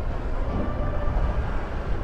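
A Honda Click 125i scooter's single-cylinder engine running at low speed in slow traffic, heard as a steady low rumble mixed with wind and road noise. The exhaust is very quiet.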